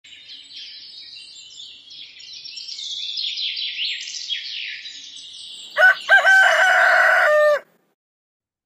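Small birds chirping with quick high glides, then a rooster crows once, much louder. Its cock-a-doodle-doo starts with two short notes and ends in a long held note that cuts off sharply.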